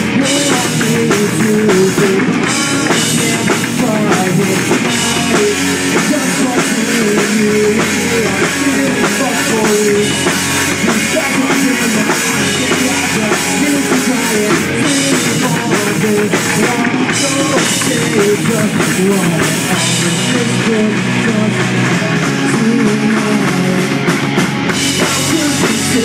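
Punk rock band playing live at full volume: electric guitars, bass guitar and a drum kit, with a lead singer's vocals over them.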